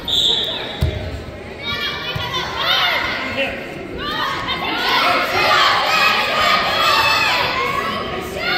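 A referee's whistle blows briefly at the start, a thud on the mat follows just under a second in, and then spectators and coaches shout and cheer in a large gym, louder toward the middle and end.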